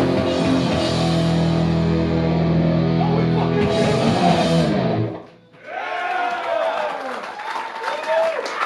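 Hardcore band playing live: distorted electric guitars, bass and drums hammering out a held low chord. The song cuts off suddenly about five seconds in, and stray guitar sounds and voices follow.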